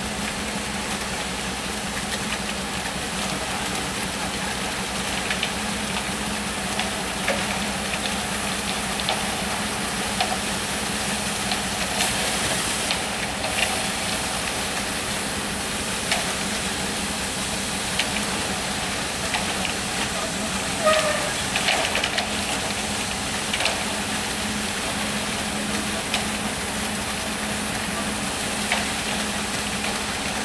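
Concrete mixer truck running steadily with a constant hum while concrete is poured down its chute, with scattered short scrapes and knocks of shovels and rakes working the wet concrete.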